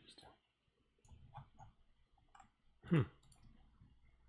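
A few scattered soft clicks from a computer mouse and keyboard at a desk, starting about a second in, with a short spoken 'hmm' about three seconds in.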